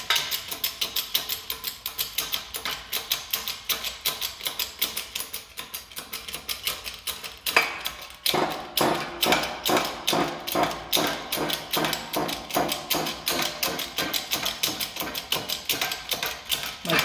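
Hydraulic shop press pumping as it presses a pinion gear off its shaft: an even, rapid clicking of about three or four strokes a second, with one sharp crack about halfway through, after which the clicks sound fuller.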